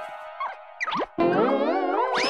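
Cartoon music with comic sound effects: a falling tone fades out, then about a second in a loud, wobbling tone starts and slowly rises, in the manner of a cartoon 'boing'.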